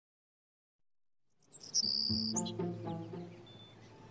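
Silence, then about a second and a half in, soft background music begins with birds chirping over it, one bright chirp loudest near the start.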